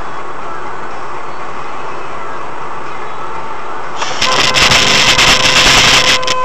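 Steady road and tyre noise of a car moving at motorway speed, as picked up inside the cabin. About four seconds in, a much louder, harsh crackling noise starts and lasts to the end, with a faint steady tone under it.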